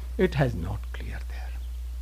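A man's voice, speaking into a microphone, says a few syllables at the start, followed by faint breathy sounds, then a pause filled only by a steady low electrical hum.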